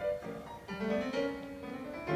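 Concert grand piano playing a quick classical passage live with an orchestra, picked up from far back in a large outdoor amphitheatre.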